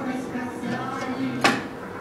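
A single sharp knock of hard plastic toys about one and a half seconds in, as a toddler pushes a plastic ride-on toy car, over an indistinct murmur of voices in the room.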